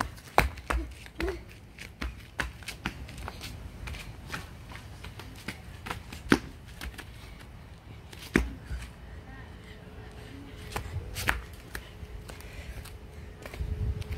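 Rubber flip-flops slapping and scuffing on concrete pavement as a child hops through a hopscotch course: irregular sharp slaps with a few louder landings.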